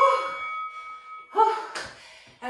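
An interval-timer chime rings out at the end of a work round, a held bell-like tone that fades out just before the end. Over it come two short, breathy vocal sounds from the winded exerciser, one at the start and one about a second and a half in.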